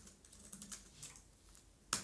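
Typing on a computer keyboard: a few faint keystrokes, then a louder key press near the end as the Enter key runs the command.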